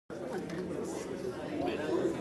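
Audience chatter in a large hall: several people talking at once at a low level, no single voice standing out.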